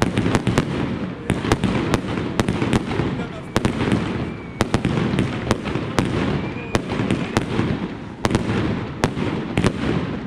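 Fireworks display: aerial shells bursting in a continuous barrage, sharp bangs and crackles coming a few a second over a steady rumble.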